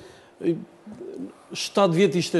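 A man's speaking voice with a short pause: a brief syllable and a low murmured sound, then the speech picks up again near the end.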